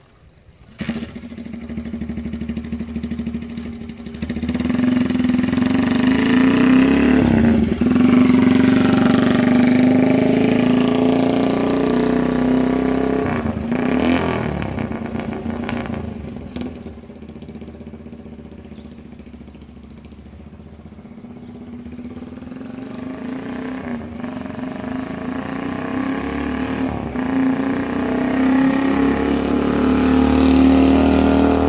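1949 Simplex motorcycle's small single-cylinder two-stroke engine running as it rides off down the street. It grows fainter around the middle as the bike moves away, then louder again as it comes back past near the end.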